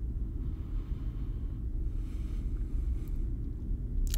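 Steady low rumbling hum of a space-station ambience bed, with a couple of faint soft hisses over it.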